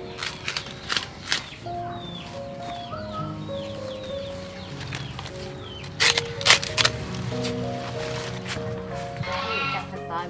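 Background music with a gentle melody, over which a cleaver chops through a clump of long green leaves: a few sharp cuts in the first second and a half, then the loudest run of cuts at about six to seven seconds in.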